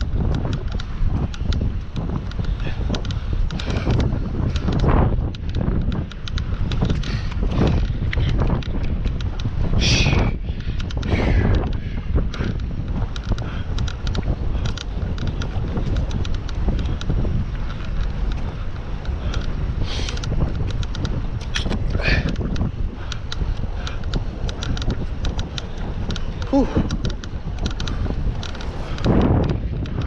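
Wind buffeting the microphone of a bicycle-mounted camera while riding into a headwind, a loud, steady low rumble with occasional sharper gusts. The rider gives a breathy "whew" near the end.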